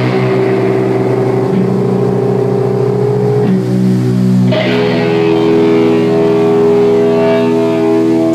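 Amplified electric guitars holding long, ringing chords in a live rock band, with the drums not playing; a new chord is struck about four and a half seconds in.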